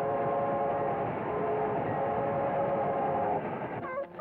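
Cartoon sound effect of a steam locomotive rushing past with a loud steady hiss, its whistle held as a chord of several notes that stops a little before the end.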